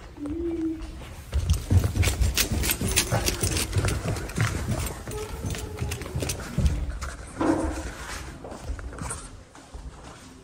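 Footsteps on a hard tile floor with the knocks and rumble of a handheld camera being carried, at an uneven pace, busiest in the middle.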